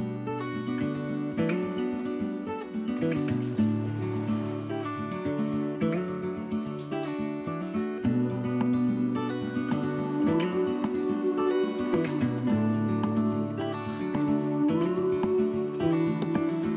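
Background music led by a strummed acoustic guitar.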